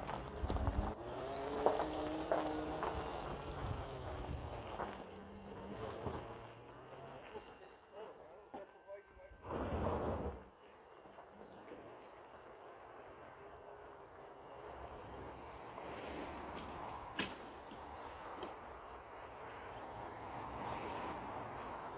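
Electric-converted pickup truck moving slowly over a gravel drive, heard faintly: tyres crunching on stones, with no engine sound. A louder rush of noise comes just before ten seconds in.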